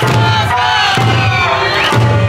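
Okinawan Eisa dancers shouting their "Eiya-sasa" calls in chorus over deep odaiko drum beats about once a second, with Eisa folk music playing.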